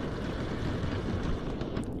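Steady wind noise on the microphone, a low, even rumble without any clear rhythm or tone.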